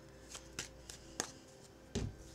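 Tarot cards being shuffled and handled to draw a clarifier card: a few sharp card clicks, the loudest near the end with a dull thump.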